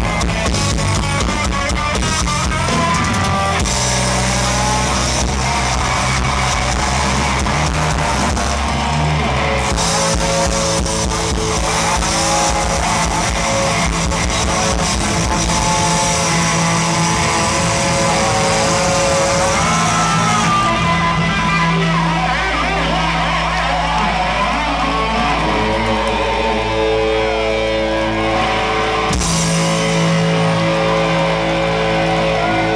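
A two-stroke chainsaw revving with the live rock band's guitars and drums, its pitch swooping up and down with the throttle.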